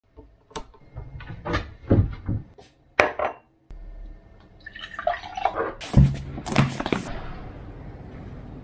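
Kitchen handling sounds: a run of knocks and clinks from a cupboard door and glassware, then juice poured into a glass, with more clatter near the end.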